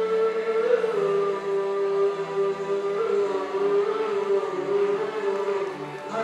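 A male voice singing solo into a microphone, holding long notes that change pitch about a second in, again midway and near the end.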